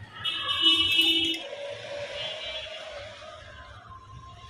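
Elevator's electronic arrival buzzer sounds harshly for about a second, then a softer wavering tone lingers and fades.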